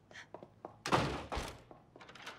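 A door slammed shut: a heavy thunk about a second in, followed by a second knock half a second later.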